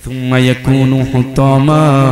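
A man's voice chanting a Bengali waz sermon in a drawn-out, sing-song tone, with a long held note near the end.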